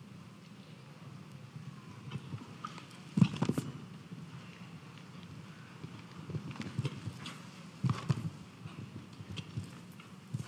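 A horse's hooves cantering on a sand arena footing, an uneven patter of soft thuds, with louder thuds about three seconds in and again near eight seconds.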